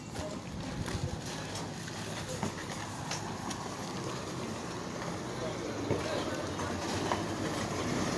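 A motorcycle engine running steadily beneath indistinct background voices, with a few scattered knocks.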